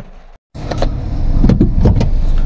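Automatic car driving along a rough concrete road, heard from inside: a loud, steady low rumble of engine and tyres starting about half a second in, with a few short knocks from the road surface.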